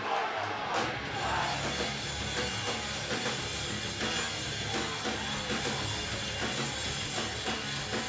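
A hardcore band playing live and loud, with drums and electric guitar. The full band comes in about half a second in, after a moment of yelling.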